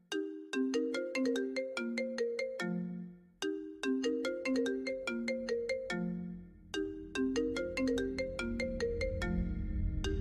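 iPhone ringtone, bass boosted: a short melody of bright struck notes that sound like a marimba, played three times with a brief break between each. From about seven seconds in, a deep bass rumble swells underneath and grows loud near the end.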